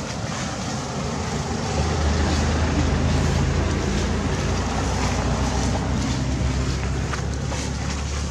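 A steady low engine hum, as from a motor vehicle running nearby, sets in about two seconds in over a constant rushing outdoor noise.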